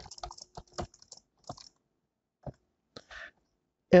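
Computer keyboard typing, faint: a quick run of keystrokes in the first second and a half, then a few scattered single taps.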